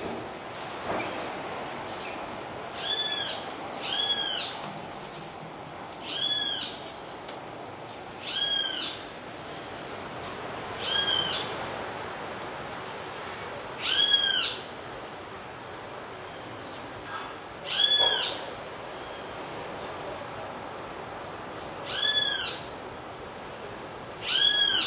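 Great kiskadees calling with single loud notes, each about half a second long and rising then falling in pitch, about eight of them at irregular gaps of one to four seconds: alarm calls at an opossum on the tree.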